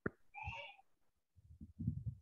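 A sharp click, then a brief high-pitched chirp-like call lasting about half a second. Low muffled rumbling and thumps follow from about halfway through, as picked up by an open online-call microphone.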